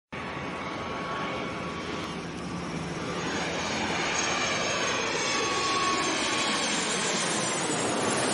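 Jet aircraft engine noise used as an intro sound effect: a steady rushing noise with faint sliding tones in it, growing slowly louder over the seconds.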